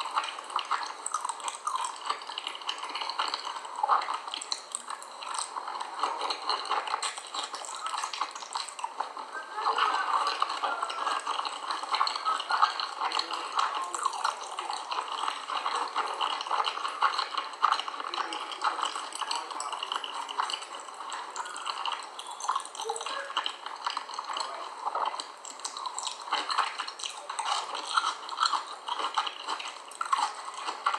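Close mouth sounds of chewing dry cornstarch: a dense, continuous crackling and squeaky crunching as the powder is worked in the mouth.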